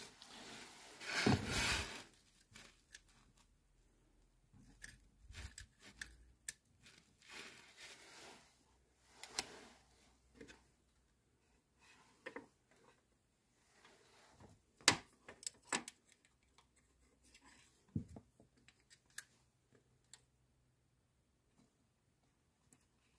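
Scattered faint clicks, scrapes and rattles of hand tools working at a VW engine's timing-belt tensioner pulley, with a noisy scrape about a second in and a sharp metallic click about two-thirds of the way through.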